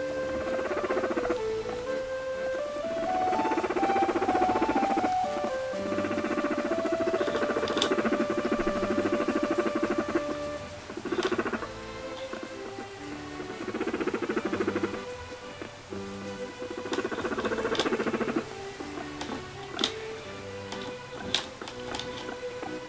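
A guinea pig calling while being stroked: a rapid pulsed purring 'mokyu-kyu' sound in several bursts, the longest about four seconds, over background music with a simple melody.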